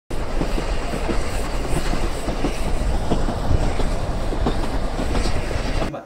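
Regional passenger train running along the track: a steady low rumble with irregular clicks of wheels on the rails.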